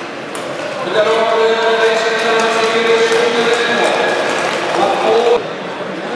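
A man's voice over a public-address system, echoing in a large hall, starting about a second in and cutting off before the end, over a steady background of rink noise.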